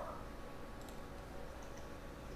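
A few faint, short clicks over a low, steady room hum.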